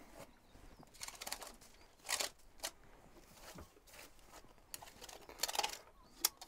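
A hand brushing loose compost off the tops of plastic root-trainer cells: faint, scattered rustling sweeps, the louder ones about two seconds in and again near the end.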